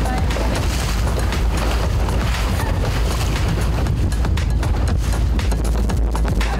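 Wind rumbling and buffeting on the microphone over choppy open water, loud and steady, with background music underneath.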